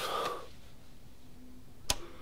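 A man's breathy sigh as he lies back on a sofa, then a single sharp click near the end.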